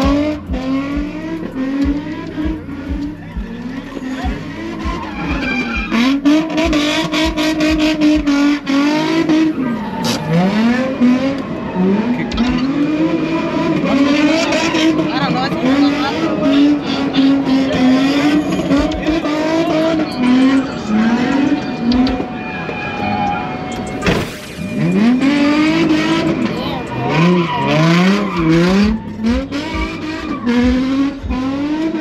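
A car engine revving up and down over and over while its tires squeal and skid, as a car does donuts. The revving breaks off briefly about three-quarters of the way through, then picks up again.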